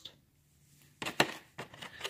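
A quick cluster of sharp clicks from coins being handled and set down on a table, one click much louder than the rest, about a second in after a near-silent start.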